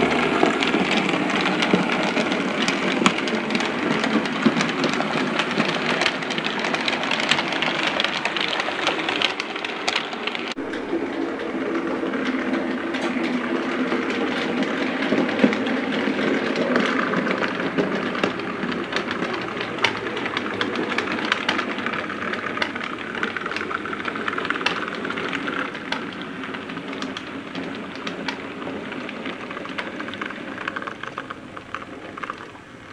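Model steam locomotive and coaches running on model railway track: a continuous clattering rattle of small metal wheels over the rail joints and points. The sound changes abruptly about ten seconds in and grows a little quieter toward the end.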